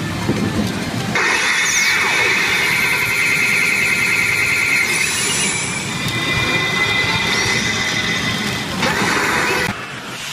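Pachinko machine sound effects at full volume: a shrill, warbling electronic tone over a dense wash of noise for several seconds, with a few quick falling whistles near the start. The sound changes abruptly just before the end.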